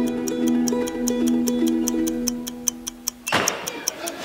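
Soft music of held notes fading away over a clock ticking steadily about four times a second. A little after three seconds in, a sudden loud rush of noise breaks in.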